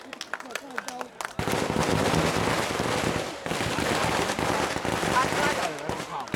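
A string of firecrackers going off in a rapid, continuous crackle that starts suddenly about a second and a half in, after a few scattered pops, and dips briefly about halfway through.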